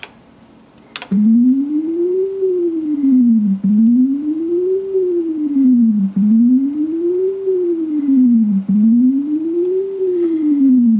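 Yamaha YMF262 (OPL3) FM sound chip playing a single plain test tone whose pitch slides smoothly up and back down, one rise and fall about every two and a half seconds, repeating about four times. It starts about a second in, just after a short click.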